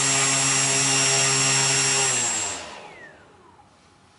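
Brushless outrunner motor and propeller of a multicopter running steadily at part throttle, its propeller balanced with a small added weight, then spinning down as the throttle is cut: the whine falls in pitch and fades out about three seconds in.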